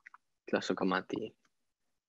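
Only a man's voice: a short, untranscribed utterance about half a second in, with a few faint clicks just before it.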